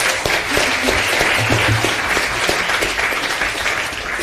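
Audience applauding, a dense patter of many hands clapping that eases slightly near the end.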